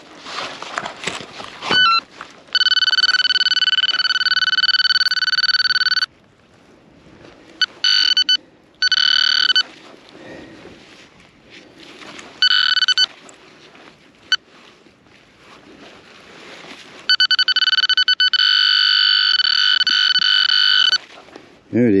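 Handheld metal-detecting pinpointer sounding its steady high-pitched alert tone in several bursts, two of them lasting three to four seconds and a few brief ones between, as it is probed into the dug hole and soil. The tone signals metal close to its tip, here a big piece of copper.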